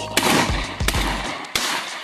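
Gunshots fired at a wild turkey: two loud, sharp shots about a second and a half apart, with a weaker crack between them. The turkey runs and then flies off unhurt, so the shots miss.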